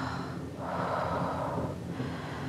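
A woman in labour breathing heavily through the pain: the tail of one breath at the start, then a long, strained exhale from about half a second in.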